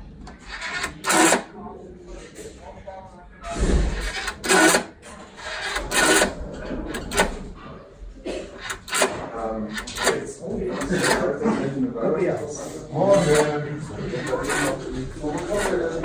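Rotary-dial telephone being dialled: the dial is wound round and runs back with a rapid clicking, several times over.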